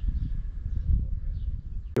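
Outdoor ambience with a low, uneven rumble and no clear distinct event.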